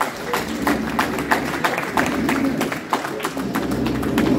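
A small group of people applauding, hands clapping in a fast, irregular patter.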